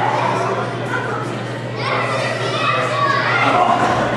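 Wrestling crowd in a hall: many spectators' voices overlapping in chatter and shouts, some high-pitched like children's, with no single clear speaker, over a steady low electrical hum.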